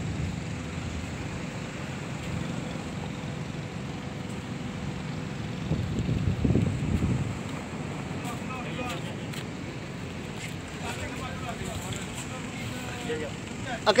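Wind buffeting the microphone as a low, steady rumble, with a stronger gust about six seconds in. Faint voices of people nearby come in during the second half.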